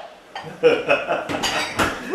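Kitchen dishes and utensils clinking, a few sharp clinks, with a woman laughing.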